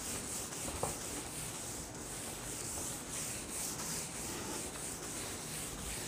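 A whiteboard being wiped with a cloth: a repeated hissing rub, about two back-and-forth strokes a second.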